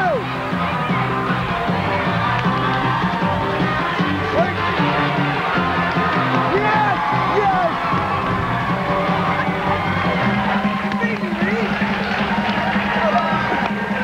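Music playing while a studio audience cheers and shouts for the contestants racing on the bungee run.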